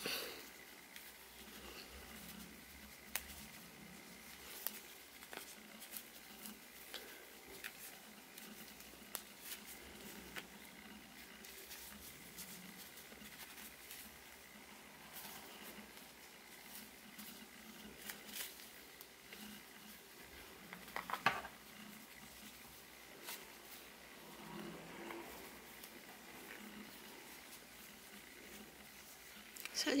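Faint handling noise from crocheted yarn pieces and an amigurumi doll being fitted together by hand: soft rustles and scattered small clicks, with a brief louder rustle about two-thirds of the way through.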